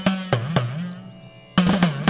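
Background music of a hand drum playing a repeating phrase: sharp strokes over a deep tone that bends down and back up in pitch, with a new phrase starting about one and a half seconds in.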